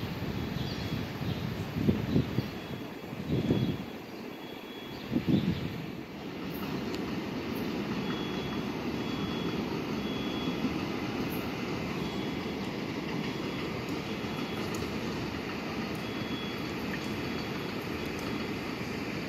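Long Island Rail Road electric commuter train running in toward the platform, with a steady rumble of wheels on rail. Three louder rushes come in the first six seconds, and a faint high tone comes and goes throughout.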